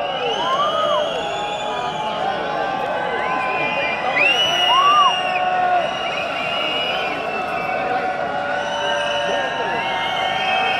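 Large festival crowd cheering and shouting after a rock song ends, many voices overlapping. The cheering swells at the start and is loudest about four to five seconds in.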